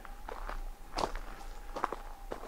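Footsteps of a person walking on a gravel path, a few separate crunching steps.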